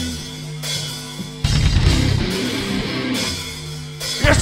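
Live heavy rock band with distorted guitars and a drum kit playing a stop-start riff: a held low note, the full band crashing in about a second and a half in, then dropping back to the held note near the end.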